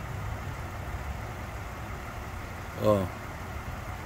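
A car engine idling, a steady low rumble.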